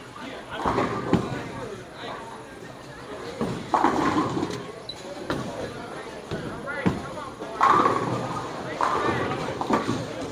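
Bowling alley noise: voices of other bowlers talking, broken by sharp knocks and thuds of bowling balls and pins, several times.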